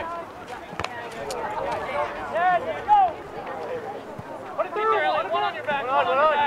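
Several people's voices calling out and talking across an outdoor soccer field, overlapping one another, with a couple of sharp knocks near the start.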